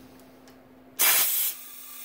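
Compressed shop air blown into the underdrive clutch circuit of a 68RFE automatic transmission to apply the clutch: a sudden loud hiss about a second in, easing after half a second to a quieter steady hiss as the air keeps flowing.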